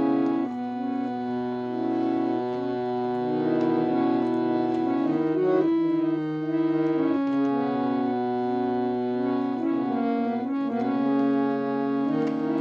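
Harmonium playing a slow instrumental introduction to a devotional song: a melody moving over sustained held notes.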